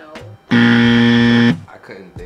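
A game-show-style buzzer sound effect: one loud, flat, harsh buzz lasting about a second. It starts and stops abruptly about half a second in.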